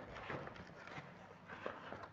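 Faint rustling and scraping of plastic wrap and cardboard as a parcel is torn open by hand, with a few small soft knocks.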